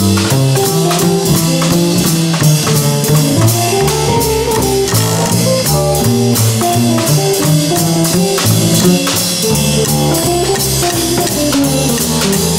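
Jazz played by a small band: a drum kit keeps steady time under a stepping bass line, with guitar and other melodic lines on top.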